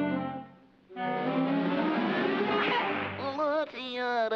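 Studio orchestra cartoon score: a held chord dies away about half a second in, there is a short gap, then the orchestra comes back in with a busy passage. Near the end a wavering sung melody begins over it.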